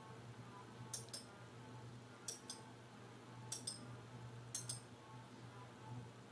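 Faint room sound: pairs of short light clicks, the two in each pair close together, recurring about every second and a quarter over a low steady hum.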